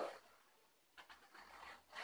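Near silence, with a few faint, soft scratchy sounds in the second half as white glue is squeezed from a plastic bottle onto a cardboard strip.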